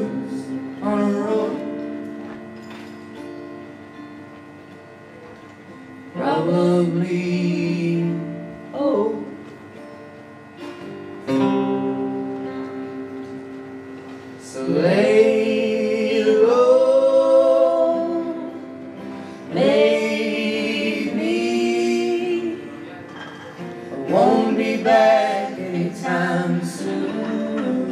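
Live guitar-and-vocal music: guitar chords struck every few seconds and left to ring out and fade, with voices singing over them.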